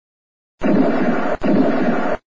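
Two harsh, noisy gunshot sounds, back to back, each lasting about three-quarters of a second and cutting off abruptly, as a pistol is fired.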